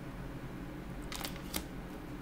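Tarot cards being handled and set down: a few brief light clicks and rustles a little after one second in and again shortly after, over a faint steady low hum.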